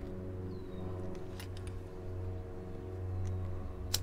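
Small clicks from handling and packing a tobacco pipe over a steady low background hum, then a sharper click near the end as a lighter is struck to light the pipe.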